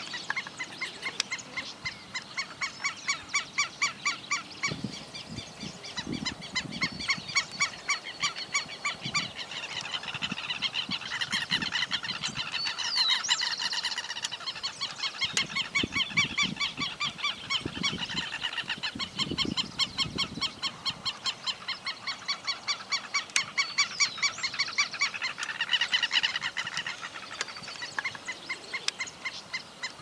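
Southern lapwings (teros) giving their harsh alarm call: a loud, strident note repeated about four times a second in long runs with short pauses. It is the alarm of a pair guarding chicks close by.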